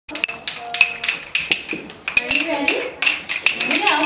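Wooden rhythm sticks tapped together by a group of children, making scattered clicks out of time with one another. Children's voices join in about halfway through.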